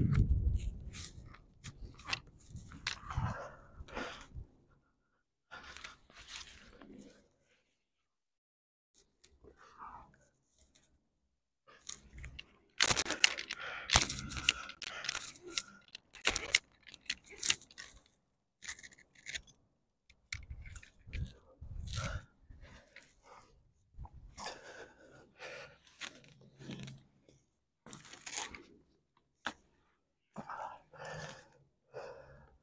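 A rock climber at work: scrapes and clinks of shoes and metal gear against rock, with sharp gasping breaths. They come in irregular bursts with quiet gaps, busiest from about twelve to seventeen seconds in.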